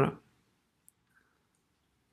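Two faint, short computer-keyboard key clicks about a second in, while a line of code is typed; otherwise near silence.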